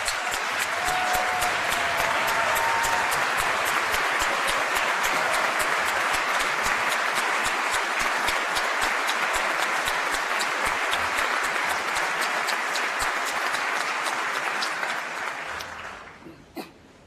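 Long round of applause from a large audience, dense hand-clapping that swells up at the start, holds steady and dies away near the end.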